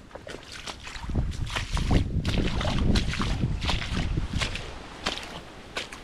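A hiker's footsteps wading through shallow swamp water and mud, a steady run of splashing, sloshing steps, with a low rumble of wind on the microphone.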